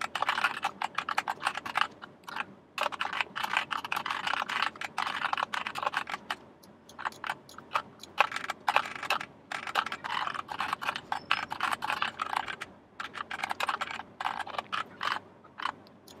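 Typing on a computer keyboard: quick runs of keystrokes broken by a few short pauses.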